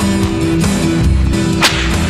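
Film soundtrack music with sustained pitched notes, cut by a single sharp whip-like crack or swish about one and a half seconds in.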